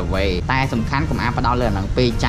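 A young man talking in Khmer over light background music.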